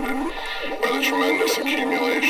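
Experimental noise-electronics piece built from re-recorded tape material: overlapping, degraded voices layered into a dense continuous texture with no clear words, dipping briefly about half a second in.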